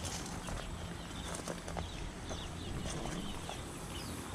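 Footsteps on a dirt garden path with a steady low rumble, scattered soft clicks and faint bird chirps.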